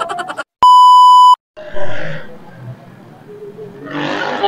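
A loud, steady electronic bleep of one pitch, lasting under a second and cut in with dead silence just before and after it: an edited-in bleep tone. A short burst of street noise follows and fades.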